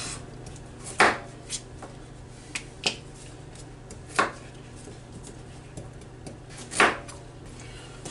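Kitchen knife cutting through carrots on a cutting board: a few separate sharp chops, the loudest about a second in, around four seconds in and near the end, with lighter taps between.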